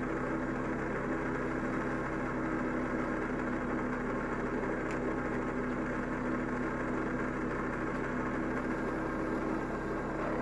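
Benchtop drill press running steadily at speed, its motor humming evenly as it spins a PVC pulley disc chucked on a bolt like a lathe.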